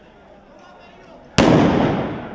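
A single loud firecracker bang about a second and a half in, followed by a long fading tail.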